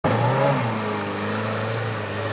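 Lada Niva engine working under load as the car climbs out of a water-filled mud pit. The note is loud and mostly steady, with a slight dip in pitch about half a second in.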